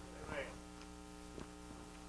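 Steady electrical mains hum, a constant buzz with a string of even overtones. A brief faint vocal sound comes about half a second in.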